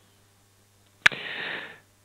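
The narrator's mouth click about a second in, followed by a short breath in that fades out.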